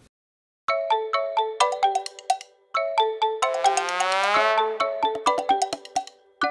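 Background music of quick, short, bright pitched notes in a bouncy rhythm, starting after a brief silence about a second in, with a long tone that slides up and back down near the middle.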